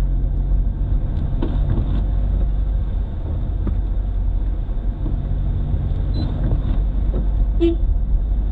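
Steady engine and road drone heard inside a moving car's cabin, a low continuous hum with no change in pace.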